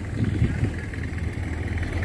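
Boat engine running steadily with a low, even hum.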